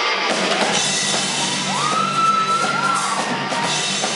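Live rock band with a horn section, drum kit and electric guitars playing. A high note swoops up, holds for about a second and falls away just past the middle.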